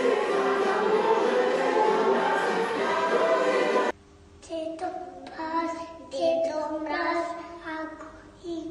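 A group of young children singing a song together over backing music. After a sudden cut about four seconds in, one or two children sing on their own, unaccompanied and quieter, in short phrases.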